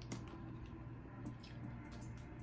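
A boiled crawfish being cracked and peeled by hand: a few soft wet snaps and clicks of shell, heard over a steady low hum.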